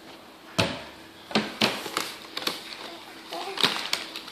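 A paper fast-food bag being handled, with about five sharp knocks as items such as a milk bottle are taken out and set down on a table.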